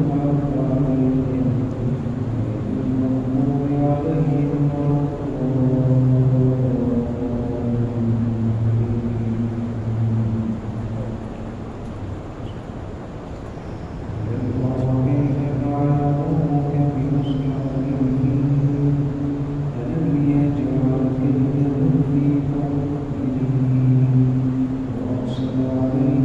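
Male voices chanting in long held notes, the pitch stepping from one held note to the next, with a lull about twelve seconds in before the chant picks up again.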